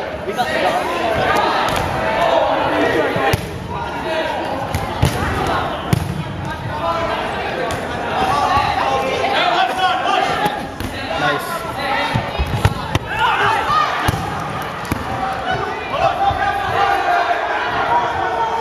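Red rubber dodgeballs being thrown, bouncing and thudding on a hardwood gym floor, many sharp hits scattered through, under continuous shouting and chatter from players and spectators.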